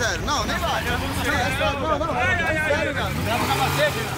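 Several men talking and calling out over one another, with a motorcycle engine running steadily underneath.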